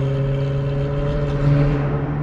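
Second-generation Acura NSX's twin-turbo V6 running at a steady pitch, heard from inside a following car, with a slight swell about one and a half seconds in.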